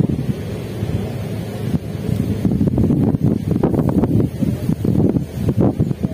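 Wind buffeting the microphone: a loud, gusty low rumble that swells and dips, stronger in the second half.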